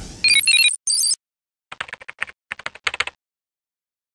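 Intro sound effects: a quick run of high electronic beeping notes, then a string of keyboard typing clicks as a web address is typed out.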